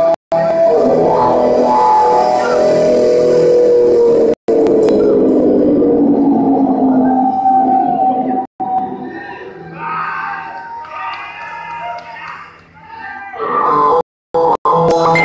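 A rock band playing live, with long held and bending pitched notes over the PA, recorded on a phone. The sound cuts out to silence briefly three times, and in the second half the music drops lower while a voice comes through.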